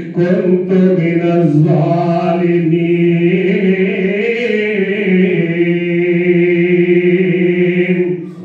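A man's voice chanting in a drawn-out melodic line into a microphone, the pitch moving over the first couple of seconds and then held on one long, slightly wavering note until near the end.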